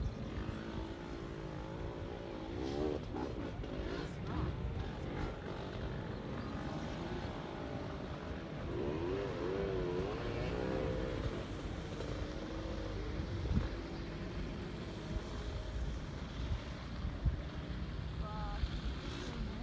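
Distant dirt-bike engines revving, the pitch rising and falling as the throttle is worked, most clearly in two spells, early and again about halfway through.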